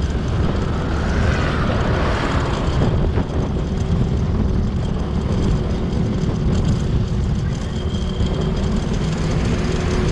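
Steady wind rush over the microphone with road and engine rumble from a moving vehicle riding along a road, with a brief swell of higher sound about one to three seconds in.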